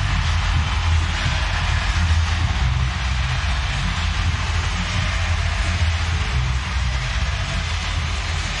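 Stadium ambience after a home run: a steady wash of noise over a deep, continuous rumble.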